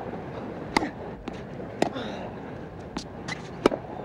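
Tennis ball being struck by rackets and bouncing on a hard court during a baseline rally. The hits are sharp pops, the first two about a second apart, then a quicker run of three near the end, over a low crowd murmur.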